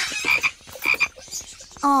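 Short croaking animal calls: a quick run of rattling clicks with a couple of brief high chirps.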